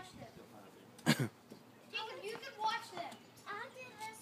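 A single short cough about a second in, followed by indistinct voices.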